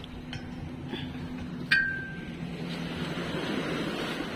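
A sharp metallic clink about one and a half seconds in that rings briefly, after a fainter click near the start, over a steady low hum.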